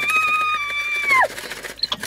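A woman's long, high-pitched "woo!" cry, held nearly level and then sliding down and stopping about a second and a quarter in.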